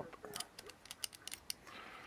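A quick string of small, faint metallic clicks from a Wynn's disc detainer padlock as its key is turned to lock it back up, about a dozen clicks over a second and a half.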